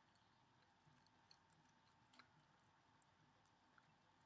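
Near silence, with a few faint short clicks of a Chihuahua licking smoothie from a glass mason jar.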